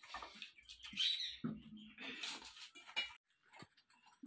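Quiet, scattered small sounds of people eating and drinking from a plastic bottle, with a brief low hum about one and a half seconds in.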